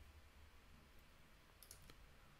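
Near silence, with a few faint computer keyboard clicks near the end as a line of code is copied and edited.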